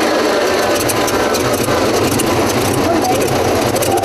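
Large vintage car engine running steadily with a low, pulsing note, its bonnet open.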